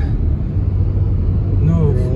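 Steady low rumble of a car's road and engine noise heard from inside the moving cabin. A voice starts speaking near the end.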